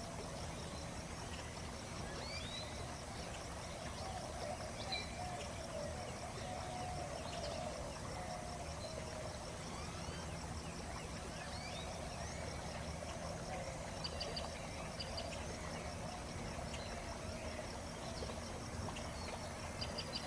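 Steady ambient background hiss with faint, short high chirps scattered through it.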